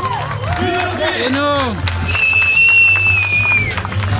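Spectators clapping and cheering around the finish, with voices calling out. About two seconds in, a shrill high note is held steady for nearly two seconds and dips slightly just before it cuts off.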